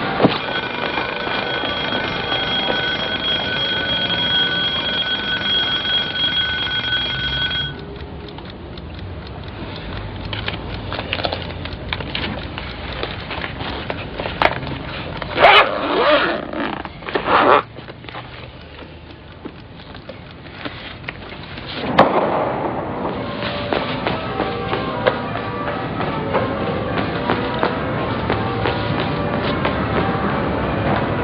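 Alarm clock bell ringing steadily, cut off suddenly about eight seconds in. After it, quieter rustling and a few knocks, with a sharp thump a little past twenty seconds.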